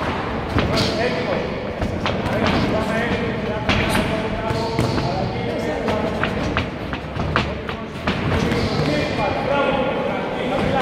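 Blows landing in a kickboxing bout, gloves and shins smacking and thudding at irregular intervals, mixed with footwork on the ring canvas. Voices shout throughout.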